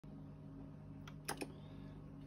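Stylus running in the lead-in groove of a spinning vinyl 45 single: faint surface noise over a low steady hum, with a few crackling clicks about a second in, the loudest a pair of pops close together.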